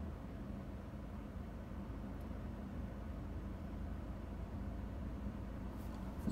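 Steady low hum inside the cabin of a 2017 Toyota Corolla LE, its 1.8-litre four-cylinder engine idling while the car is stopped.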